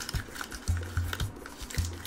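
Plastic capsule-toy shell and the plastic-bagged figure inside being handled by hand: faint plastic rustling and small clicks, with soft background music underneath.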